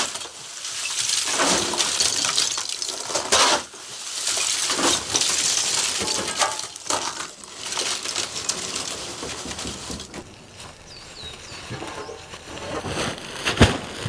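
Lumps of wood charcoal scraped across a concrete kiln floor and tipped into a woven sack: crisp clinking, rustling bursts a few seconds each, busiest in the first half, with a few sharp knocks near the end.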